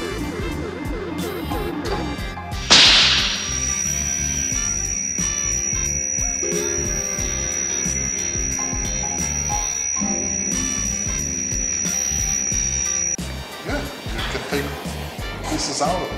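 Film sound effect of an industrial laser beam: a sudden burst about three seconds in, then a steady high-pitched whine held for about ten seconds before it cuts off, over film score music.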